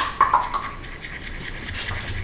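A sharp click, then soft scratchy rubbing and scraping from hands working at the table.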